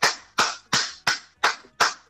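Hands clapping in a steady rhythm: six sharp claps, about three a second.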